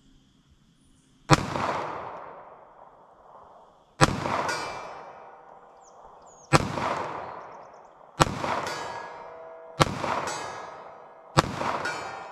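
Six pistol shots from a Smith & Wesson M&P380 Shield EZ firing .380 ACP Speer Gold Dot, spaced about one and a half to two and a half seconds apart. Each shot is followed by a long fading echo, and a ringing tone follows several of them, fitting hits on the steel plate.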